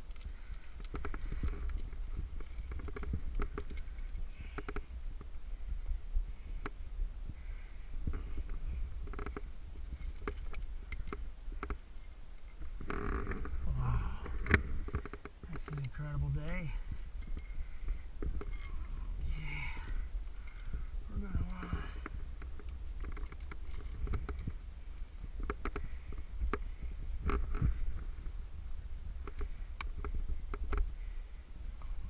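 Climbing gear handled on the rock: scattered metallic clicks and clinks of carabiners and a cam as protection is placed in a crack and clipped, over a steady low rumble. Muffled grunts and breathing from the climber come in now and then, mostly in the middle.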